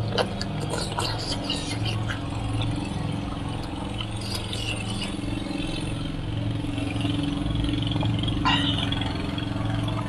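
Close-up eating of braised pork trotters: soft chewing and a few faint clicks from chopsticks and the sticky skin being pulled. These sit over a steady low hum that runs throughout.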